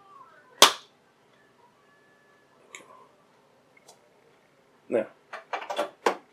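Third-generation iPod's stainless steel back snapping into its plastic front shell: one sharp, loud click about half a second in as the case latches catch. A couple of faint ticks follow.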